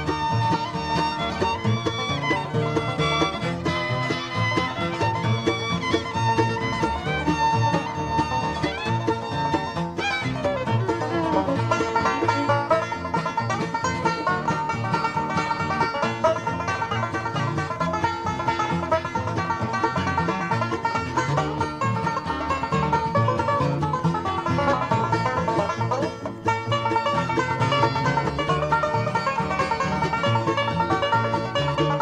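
Live bluegrass band playing a fiddle instrumental on fiddle, banjo, mandolin, guitar and bass.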